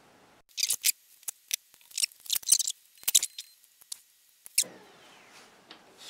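Scissors snipping, a quick run of short crisp cuts over about four seconds, ending with one sharper click.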